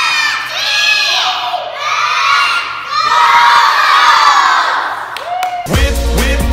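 A group of young children shouting and cheering together in a string of long, high-pitched calls. Music with a heavy bass beat cuts in just before the end.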